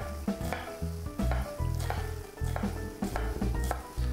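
Knife chopping an onion finely on a cutting board: a run of quick, irregular taps, over background music.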